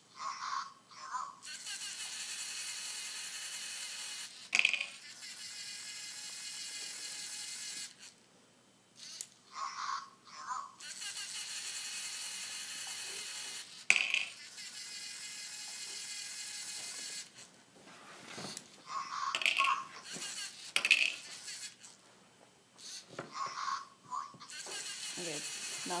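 LEGO colour-sorting robot repeating its cycle about three times: a short spoken colour word from its speaker, then its motors whining steadily for a few seconds as it drives along the row of bins, with a sharp click as a brick drops.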